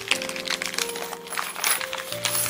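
Small steel cleat bolts clinking and jingling together as they are tipped out of their plastic bag and handled in the palm: a scatter of quick light metallic clicks over soft background music.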